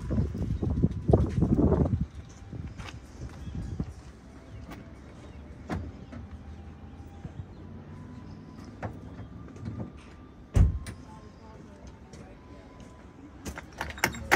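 Casket being slid into the rear deck of a hearse: scattered light clicks and knocks, then one loud thump about ten and a half seconds in as it is pushed home, with a few more clicks near the end.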